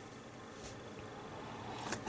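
Quiet room tone with one faint, brief rustle of hands on a magazine page less than a second in.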